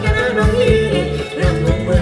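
Live band playing Thai ramwong dance music: a singer's wavering melody over a steady drum beat.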